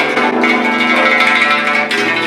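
Guzheng (Chinese zheng zither) being played: a sharp plucked attack at the start sets many strings ringing together, and another sharp stroke comes near the end.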